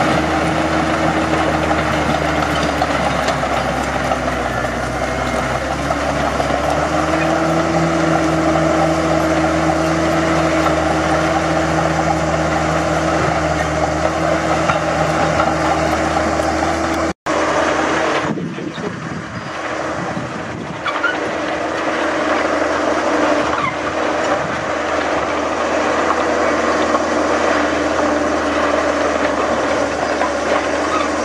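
Heavy diesel engine running steadily under work, its pitch sagging and then climbing back a few seconds in, with a sudden break a little past halfway.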